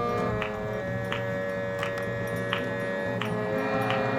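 Harmonium playing sustained chords, with a light tick keeping time about every 0.7 seconds, as kirtan accompaniment.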